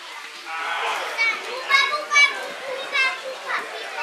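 People at a football ground shouting and yelling. A swell of voices rises about half a second in, then a few loud, high-pitched shouts follow.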